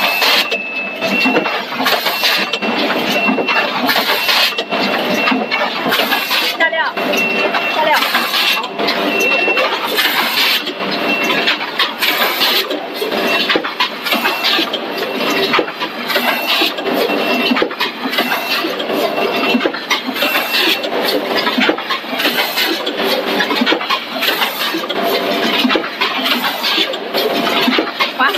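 Rotary premade-pouch packing machine running: a dense mechanical clatter broken by frequent sharp hisses and clicks. A high steady tone sounds in short repeated stretches until about two-thirds of the way through, with voices in the background.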